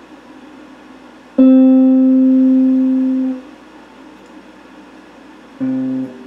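Solid-body electric guitar: a single note picked about a second and a half in rings for about two seconds and fades, and another note is struck near the end, with a steady hiss between notes.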